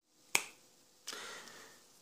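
A single finger snap, one sharp click about a third of a second in.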